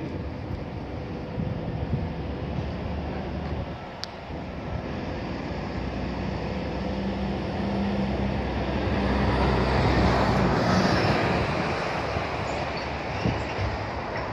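A large engine running steadily with a low rumble that builds to its loudest about ten seconds in, then eases a little.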